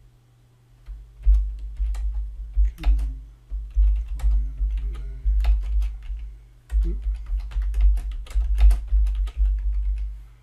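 Typing on a computer keyboard: an irregular run of keystroke clicks, each with a deep thud beneath it, starting about a second in and going on in bursts with a short break near the seven-second mark.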